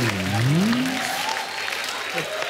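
Studio audience applauding. Over the first second a low tone dips and then rises.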